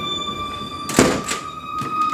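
A door shutting with a single thump about a second in, then two lighter knocks, over a background music score of steady held tones.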